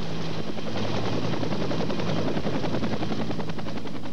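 Bell UH-1 "Huey" helicopter coming in to land, its main rotor beating in a rapid, even pulse.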